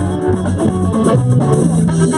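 A live band playing: electric guitar and bass guitar over a drum kit, with a trumpet.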